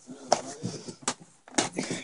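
Handling noise: three sharp clicks or knocks, the first just after the start and two more between one and two seconds in, with light rustling between them, as the camera and card packs are moved about on a table.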